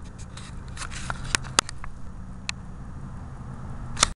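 Handling noise from a handheld camera moved close over a dryer: a low rubbing rumble with a few sharp clicks, the loudest right at the end.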